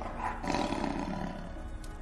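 An animal roar sound effect that swells about half a second in, then slowly fades, over soft background music.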